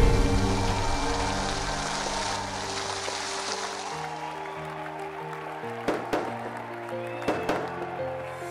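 Music of held notes playing over the hiss and crackle of fountain fireworks, which fades away over the first few seconds. A few sharp cracks come later.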